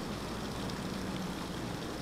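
Steady low outdoor background noise on a field reporter's open microphone: an even hiss with faint street traffic and a light hum.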